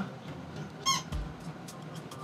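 A short, high-pitched squeak about a second in, followed by a low thump and a few faint ticks.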